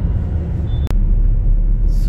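Steady low rumble of a car's engine and tyres heard from inside the cabin at highway speed. It is broken by a sharp click and a momentary dropout about a second in.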